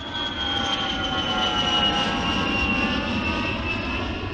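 Jet airliner flying past: a steady roar with a high engine whine that slowly falls in pitch.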